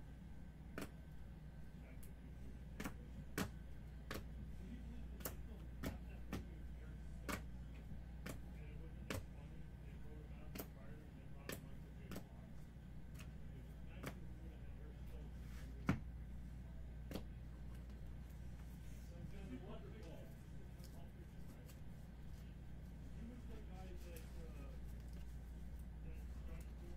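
Trading cards being handled and dealt by hand onto piles on a table: sharp, irregular clicks about once a second, the loudest about two-thirds of the way through, growing sparse near the end, over a steady low hum.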